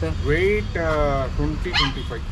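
Kombai dog whining: two drawn-out cries, the first rising and falling, the second a longer falling one.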